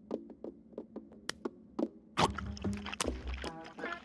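Cartoon chewing sound effects of a mouthful of meat being chewed: scattered short clicks at first, turning busier about halfway through, over background music.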